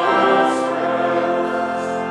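A hymn sung by many voices with organ accompaniment, in long held notes, with a soft 's' sound about half a second in and again near the end.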